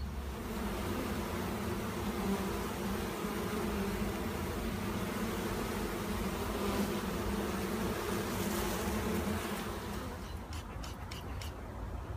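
A honeybee swarm buzzing at close range, a dense steady hum that fades about ten seconds in. A few light clicks follow near the end.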